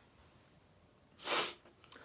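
A man's single sharp, noisy breath about a second in, a breath of a man overcome with emotion and close to tears, with a fainter breath near the end.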